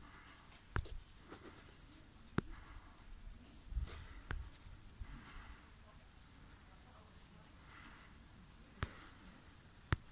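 Small birds chirping in short, high calls, about a dozen of them, over faint outdoor background, with a few sharp clicks between them.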